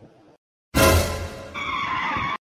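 A cartoon sound effect of a motor scooter with a high tyre screech, laid over background music. It starts suddenly about a second in, after a brief silence.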